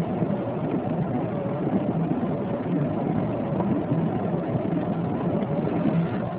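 Car engine and tyre noise heard from inside the cabin while driving, a steady hum.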